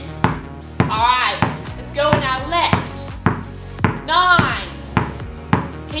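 Background music with a singing voice, over a basketball dribbled steadily on a hard indoor floor at about two bounces a second.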